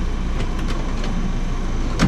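Steady low machine hum, with a few faint clicks and knocks about half a second in as wooden dresser drawers are handled.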